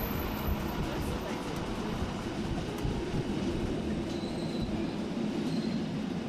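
Bernina Express train running, a steady rumble of wheels and track noise.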